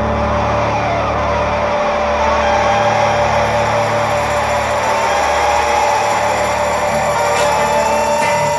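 Helicopter sound effect: steady engine and rotor noise with a whine that dips in pitch and then climbs again, over a low steady drone.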